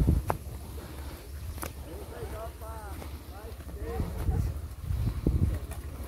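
Faint voices over a low rumble of wind on the microphone, with a few soft clicks from footsteps and handling as the camera is carried along a dirt path.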